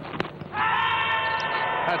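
Bowler and fielders appealing to the umpire with a loud, drawn-out shout that starts about half a second in, just after a sharp knock of the ball.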